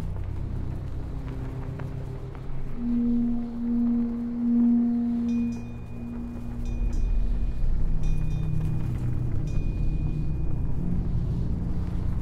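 Dark ambient music: a low rumbling drone, with a bell-like tone swelling in a couple of seconds in and fading by about six seconds. After that, a thin high tone with a few clusters of rapid electronic clicks runs through the middle.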